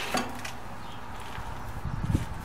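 Light handling knocks as a hand feels the resin-cast cholla workpiece on the stopped lathe, over a steady workshop hum; one short sharp knock comes just after the start and a few soft ones near the end.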